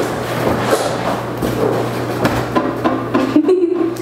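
Footsteps, knocks and rustling as a person moves behind a desk and sits down in a chair, over a steady low electrical hum. A short voiced sound comes near the end.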